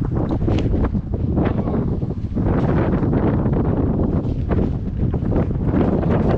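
Strong wind buffeting the microphone: a loud, gusty rumble that doesn't let up.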